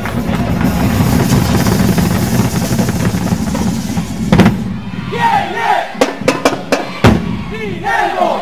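Crowd cheering and shouting loudly for the first half. Then come a sharp strike, several separate drum strokes and shouted voices.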